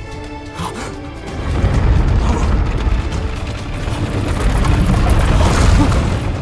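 Film score, then about a second and a half in a loud, sustained low rumbling boom, a blast or impact sound effect in a fight scene.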